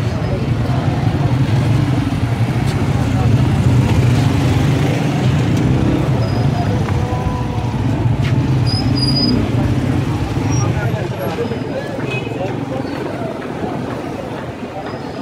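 Busy market-street traffic: motor vehicle engines, motorcycles and a van, running close by at walking pace, with a crowd talking all around. The engine hum is strongest through the first two-thirds and eases off near the end.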